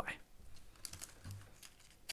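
Faint, scattered clicks of a computer keyboard being used, after one sharp click at the very start.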